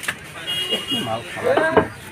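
People talking, with a sharp knock right at the start and a brief steady high beep-like tone about half a second in.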